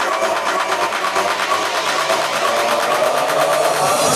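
Breakdown of an electronic dance track: a buzzing synth line pulsing in fast, even repeats, with no kick drum or bass under it.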